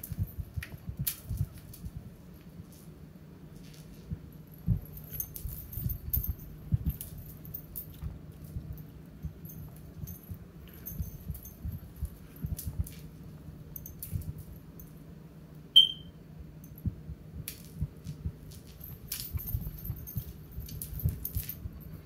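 Scattered taps, clicks and light jingling as a cat bats a small toy across a tile floor, over a low steady hum. One short high-pitched squeak about 16 seconds in is the loudest sound.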